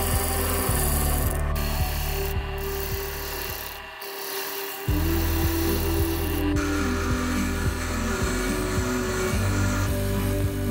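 Amboyna burl wood spoon handle being sanded against a spinning lathe-mounted sanding drum: a steady machine hum with the hiss of abrasive rubbing on wood. The sound breaks off briefly about four seconds in, then resumes.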